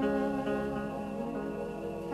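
Live band playing an instrumental passage of a jazz song, a held melody line over the accompaniment, with no voice.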